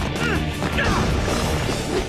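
Cartoon fight sound effects, crashes and hits, over dramatic background music.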